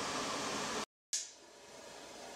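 Low, steady room hiss that drops out into dead digital silence for about a quarter second about a second in, at an edit. A much fainter room tone follows.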